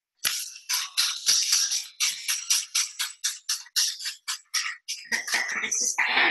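Trigger spray bottle being squeezed again and again, a quick run of short spritzes about five a second, misting cleaner onto a tabletop; near the end a longer, fuller sound takes over.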